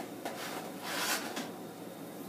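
Rubbing and scraping as a metal broiler pan of pork chops is slid out of the broiler drawer and lifted with oven mitts, with a brief louder scrape about a second in.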